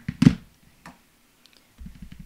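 A sharp plastic click as a Stampin' Up ink pad case is snapped open, followed by a fainter click. Near the end comes soft, rapid dabbing as a foam sponge dauber is tapped into the red ink pad.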